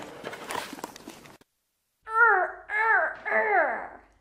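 A rustling noise for about a second and a half that cuts off suddenly, then a woman laughing out loud in three long peals, each falling in pitch.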